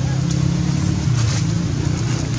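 Steady low engine-like hum that shifts slightly in pitch about a second in, with a few faint clicks.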